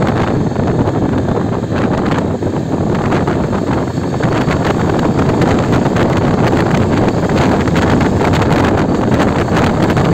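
Steady wind buffeting on the microphone of a Yezdi Adventure motorcycle riding at about 40 to 50 km/h, with the bike's engine and road noise under the wind.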